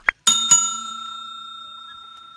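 A bell-like notification ding struck twice in quick succession, ringing on and fading slowly, the sound effect of an animated subscribe button being clicked; a short sharp click comes just before it.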